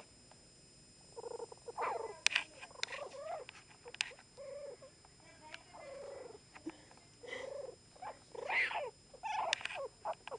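Chihuahua puppies whimpering in many short, whiny cries that bend up and down in pitch, with a few sharp clicks.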